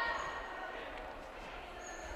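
Quiet background sound of an indoor futsal hall during play: a steady, even hum of the hall with faint, distant voices from the court.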